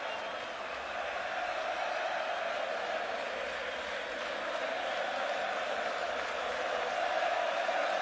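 A large concert crowd cheering and applauding in a dense, continuous wash of voices and clapping that slowly grows louder.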